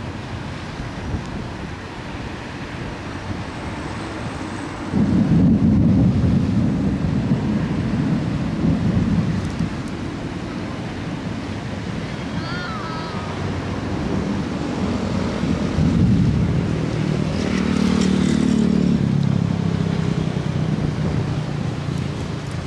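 Thunder rumbling over the sea: a low rumble comes in suddenly about five seconds in and dies away over several seconds, and a second swell of low rumbling comes near the end. Steady surf and wind noise run underneath.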